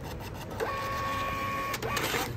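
Thermal receipt printer printing a receipt slip: a steady whine of about a second, starting about half a second in. It stops with clicks, then a short rasp as the slip is torn off near the end.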